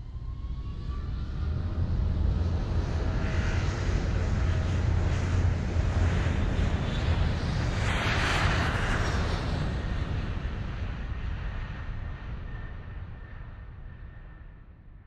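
An airplane passing by: a low engine rumble that builds up, is loudest about eight seconds in, and fades away near the end.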